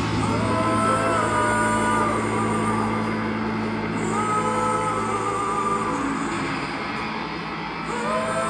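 Live rock band in a quiet passage with the drums out: a held low drone under slow, sustained notes that slide up in pitch and hold, a new slide about four seconds in.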